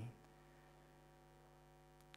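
Near silence: a faint, steady electrical hum of several even tones held together.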